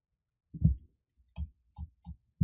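Computer mouse clicks picked up by a desk microphone: three short, dull clicks in about two seconds, the first the loudest.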